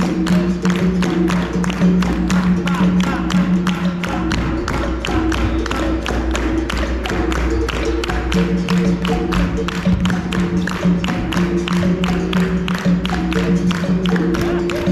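Live capoeira roda music: a berimbau's twanging notes and an atabaque hand drum over a steady rhythm of hand clapping by the circle of players.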